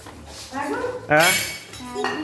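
Children's high-pitched voices, with a sudden loud outburst about a second in.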